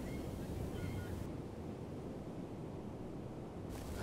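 Quiet outdoor ambience of wind and low rumble on the microphone, with a few faint, short, high bird calls in the first second.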